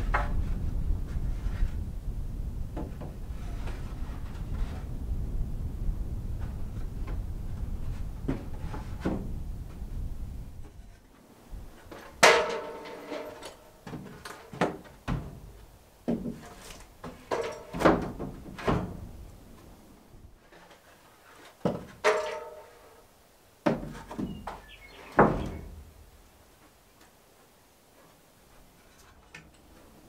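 Sharp, ringing knocks on wood, about ten of them spread over fifteen seconds, as vertical siding boards are set and fastened on a timber frame barn wall. A steady low rumble fills the first ten seconds before they start.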